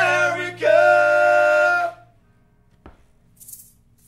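Two male voices hold the last sung note of an acoustic punk song over a ringing acoustic guitar chord, and both stop together about two seconds in. After that it is quiet apart from a single click and a brief hiss.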